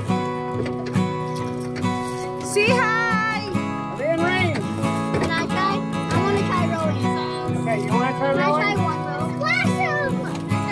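Background music with steady sustained chords, with high, wavering voices over it from about two and a half seconds in.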